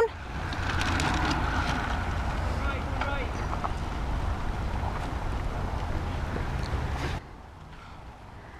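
Wind buffeting the camera microphone as a low, steady rumble that cuts off suddenly about seven seconds in.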